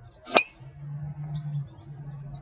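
A CorteX 9-degree driver striking a golf ball off the tee in a full swing: one sharp, metallic, ringing ping less than half a second in. A low steady hum follows.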